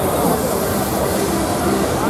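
Fairground thrill ride in operation: a loud rushing hiss with many gliding tones over it. The hiss cuts off suddenly at the end.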